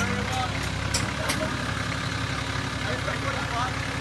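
A 4x4 truck's engine running steadily at low revs, with two sharp clicks about a second in.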